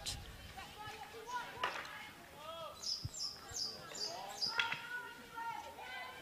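Field hockey on an artificial turf: faint players' calls and voices across the pitch, with a couple of sharp knocks of a stick on the ball as play restarts from a free out. A quick run of four or five high chirps comes in the middle.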